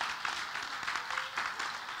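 Congregation and choir applauding, many hands clapping steadily.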